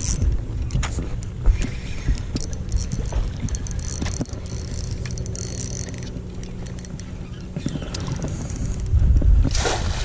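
A hooked bass splashing at the surface beside a boat as it is scooped into a landing net, with the loudest splash about nine seconds in. Under it runs a steady low hum, with wind on the microphone.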